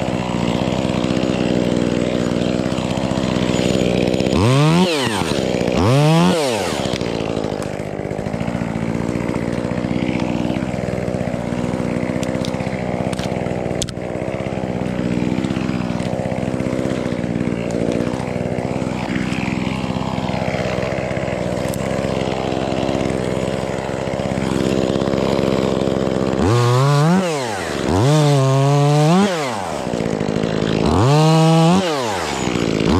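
Top-handle chainsaw idling steadily, revved up and let back down in short bursts: twice a few seconds in and three times in quick succession near the end.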